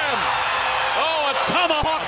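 A man's voice in TV basketball commentary over steady arena crowd noise.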